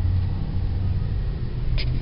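2012 Chrysler 200's 2.4-litre four-cylinder engine idling, heard inside the cabin as a steady low rumble.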